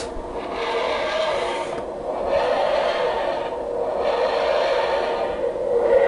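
The TARDIS take-off (dematerialisation) sound effect played by the TARDIS safe's speaker: a wheezing, grinding scrape that swells and fades in cycles about two seconds apart. It signals that the correct code was accepted and the door has unlocked.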